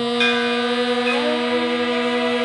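A woman's voice holding the nasal "m" of the chanted seed syllable "lam" as one long, steady hum. A few other steady tones join about a second in.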